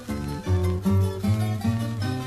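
Baroque chamber music played by an Andean ensemble, with guitar plucking a steady run of notes over a firm bass line.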